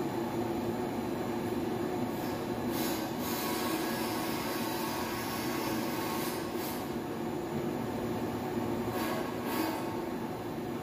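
Plastic film blowing machine running: a steady mechanical drone, with short bursts of hiss a few times.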